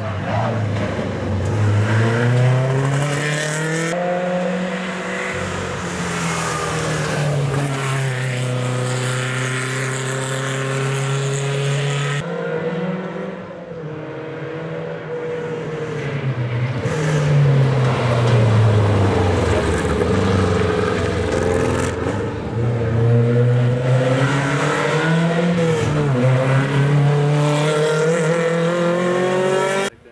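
Škoda rally saloons' rear-mounted four-cylinder engines revving hard at full throttle, the pitch climbing and then dropping at each gear change as the cars accelerate past. The sound breaks off abruptly and restarts at several cuts between runs.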